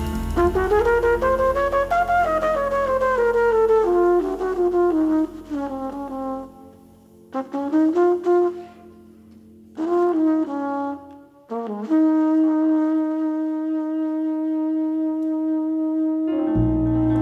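Flugelhorn playing a solo jazz phrase: quick runs that climb and fall, broken by short pauses, then one long held note over the last few seconds. A low bass tone sounds under the first few seconds and fades out.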